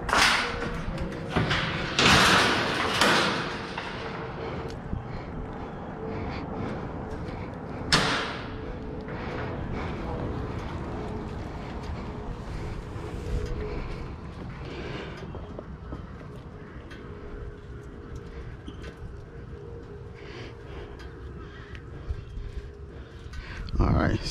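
Steel mesh utility-trailer ramp gate being lifted and closed: metal rattling and scraping in the first few seconds, and a single clank about eight seconds in. After that, quieter handling noises over a faint steady hum.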